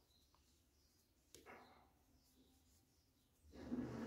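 Near silence: room tone, with one faint click about a third of the way in.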